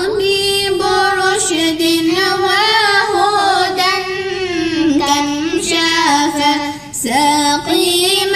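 A single high voice singing a devotional chant in a gliding, ornamented melody, with a brief breath break about seven seconds in.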